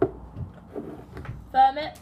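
A sharp knock at the start and small handling noises, then near the end a brief, loud wordless vocal cry from a person.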